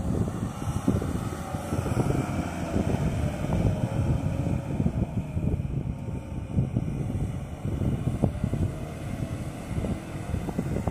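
Mahindra Getaway pickup's engine revving as it is driven hard through loose sand, heard from outside, with heavy wind rumble and buffeting on the microphone.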